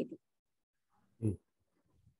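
A spoken word ends, then silence is broken about a second in by one brief, low vocal sound, a single short grunt-like utterance.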